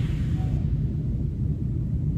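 A steady low rumble with little sound above it.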